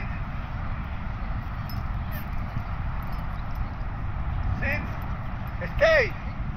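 Steady low outdoor rumble, with two short calls falling in pitch near the end, the second louder.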